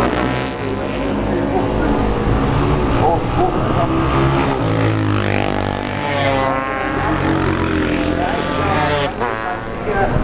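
500 cc classic racing motorcycles running hard on the straight, engines at high revs, with a rising whine about six to seven seconds in as the bikes accelerate closer.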